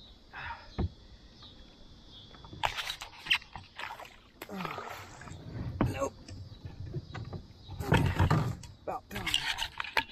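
Irregular knocks and handling noises on a fishing kayak, with some water sloshing, as the angler takes up a spinning rod to reel.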